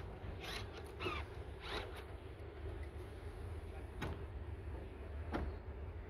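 Electric motors of a 2016 Mercedes GLS 350d's power-folding third-row seats raising the seatbacks upright: a faint steady low hum, with a few short rising squeaks in the first two seconds and two sharp clicks in the last two seconds.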